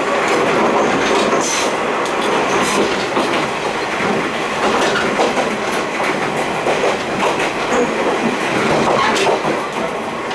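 Running noise at the gangway between two coupled KiHa 28 and KiHa 52 diesel railcars in motion: a steady loud rumble of wheels on rail, broken by a few sharp metallic clanks and rattles from the steel gangway plates shifting against each other.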